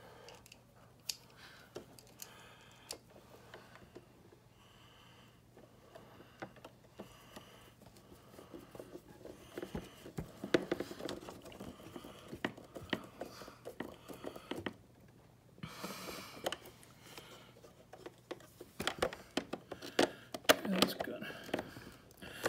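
Faint clicks and scrapes of a small screw being handled and driven with a screwdriver into the plastic housing at the bottom of a refrigerator door, with some low muttering.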